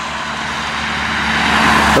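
Road traffic passing close by: tyre and engine noise from a car going past, then a small van approaching, the noise swelling to its loudest near the end.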